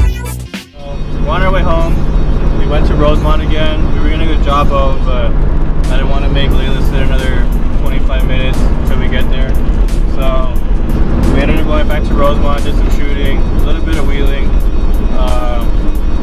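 Voices over background music with a steady beat, and beneath them the steady low drone of the truck's engine and road noise heard inside the cab.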